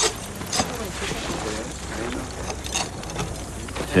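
Faint voices in the background over a steady hum of room noise, with a few sharp clicks.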